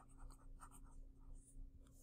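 Faint scratching of a pen writing a word in cursive on lined notebook paper, in a run of short strokes.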